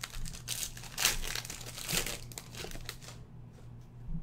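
Foil wrapper of a trading-card pack crinkling as it is handled and torn open, in a run of rustles that is loudest about one and two seconds in and dies away near the end.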